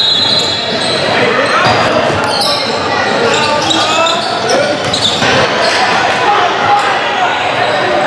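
A basketball game in a large, echoing gym: the ball bounces on a hardwood court amid a steady din of players' and spectators' voices.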